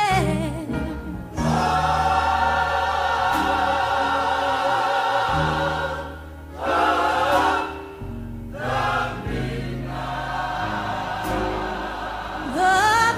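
Gospel choir singing long held chords over a steady bass line, with brief breaks about six and eight seconds in.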